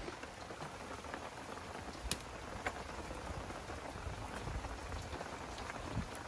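Wood fire crackling and hissing under a pot of simmering water, with a few sharp pops, the loudest about two seconds in.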